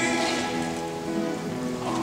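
A rondalla's plucked-string ensemble of bandurrias, lutes and guitars holding soft chords with a fast, rain-like tremolo patter, the lead voice silent between phrases.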